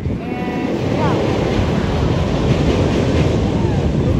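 Steel floorless roller coaster train running along its track, a loud steady roar that builds in about a second and holds, with a few rider shouts over it near the start.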